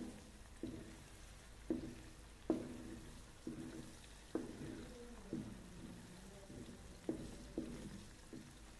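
A plastic spatula knocking and scraping against a metal kadai while fried eggs are flipped in hot oil: about eight short knocks, each with a brief ring, over a faint frying sizzle.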